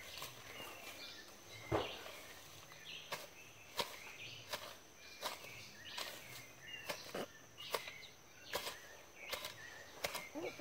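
Hands and a small hand tool scratching and scraping in loose soil, digging a hole to plant an onion seedling: short scrapes, about one every half second to a second, with faint bird chirps behind.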